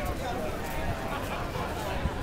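Murmur of many people's voices in a crowd, faint and indistinct, over a steady low rumble.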